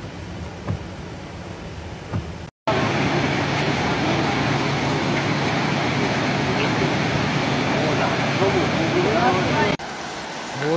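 A quiet steady noise of rain and traffic heard from inside a vehicle. Then, after a sudden cut, a much louder steady rushing noise with people's voices in it.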